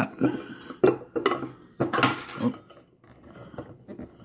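A stainless steel insulated tumbler being handled with its plastic lid and slip-on handle: several short knocks and clicks, with one sharp metallic clink about two seconds in that rings briefly.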